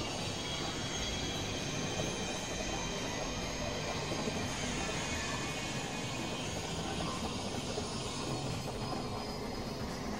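Dense, steady wash of layered experimental electronic noise and drones, with a few faint held tones high up and no clear beat or melody.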